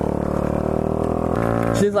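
Honda Ruckus 49cc four-stroke single-cylinder scooter engine running with a steady drone; its note changes about one and a half seconds in.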